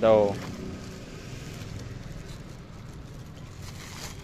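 A short, loud voice call falling in pitch right at the start, then a steady low rumble of wind on the microphone.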